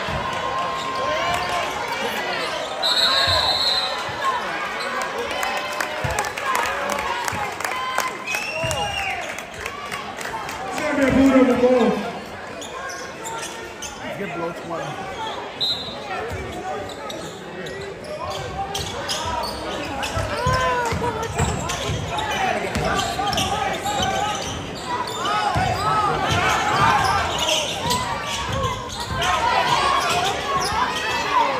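Gymnasium crowd chatter and shouting with a basketball bouncing on the hardwood court, in a large echoing hall. A referee's whistle sounds for about a second a few seconds in and briefly again near the middle, and a louder shout rises around the middle.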